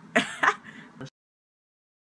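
A short burst of laughter from a young woman, then the sound cuts off abruptly to dead silence about a second in.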